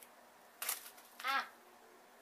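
A woman's short exclamation, "Ah!", of dismay at a craft step going wrong, about a second in. It is preceded by a brief burst of noise about half a second in.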